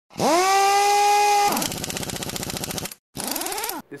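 Intro logo sound effect: a pitched tone swoops up and holds for about a second, then breaks into a fast mechanical rattle. The rattle cuts out for a moment near the three-second mark and comes back with a pitch that rises and falls.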